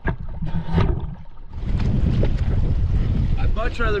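Water sloshing and knocking around a camera at the sea surface, then from about a second and a half in, a steady low rumble of wind buffeting the microphone above the water.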